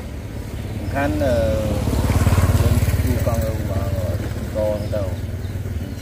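A motorcycle engine running off-screen, its rapid low pulsing growing louder to a peak around two and a half seconds in and then slowly fading.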